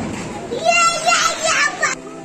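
Children's high voices shouting excitedly, starting about half a second in and stopping abruptly near the end, as the echo of a firework bang dies away.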